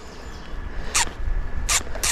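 Two short zipping rasps about three quarters of a second apart, about a second in and near the end, from a baitcasting reel's drag briefly giving line to a hooked trout. Low wind rumble on the microphone runs underneath.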